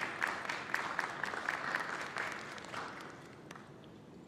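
Audience applauding, a dense patter of many hands clapping that dies away about three seconds in.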